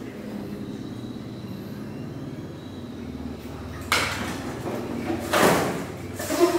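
A low steady hum, then two scraping, rustling noises near the end, the second one louder.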